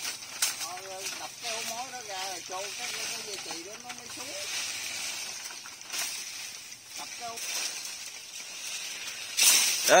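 Quiet men's voices talking, with the rustle of dry bamboo leaves and brush as a cut tree limb tangled in the undergrowth is gripped and pulled at. A louder rustling burst comes near the end, and a steady high hiss runs underneath.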